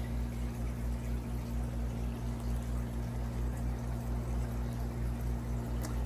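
Aquarium water circulation: a steady trickle of moving water over a low, even hum.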